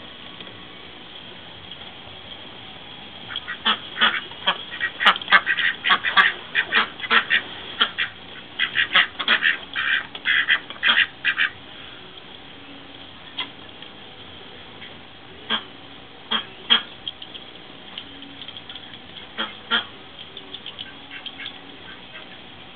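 Domestic ducks, Indian Runners and Khaki Campbells, quacking. A quick flurry of many overlapping quacks lasts several seconds, then tails off into a few scattered single quacks.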